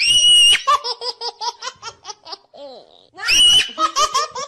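High-pitched laughter: a held squeal followed by a quick run of ha-ha-ha pulses, about six a second, with a second squeal and run starting about three seconds in.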